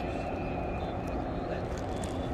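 Steady outdoor background noise of a city at night: a low hum of distant traffic with indistinct voices in it.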